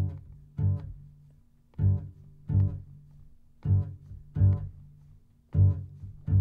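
Solo upright double bass plucked pizzicato, playing a repeating two-note figure: four pairs of low notes, a new pair about every two seconds, each note dying away before the next.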